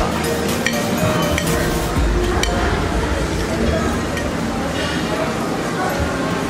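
Cutlery and crockery clinking at a dining table, a few separate sharp clinks, over a background murmur of diners' voices.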